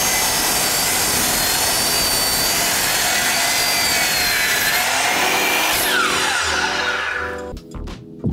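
DeWalt sliding compound miter saw running and cutting through framing lumber, a loud steady whine with the noise of the cut. Near the end the motor is switched off and the blade spins down, its pitch falling away.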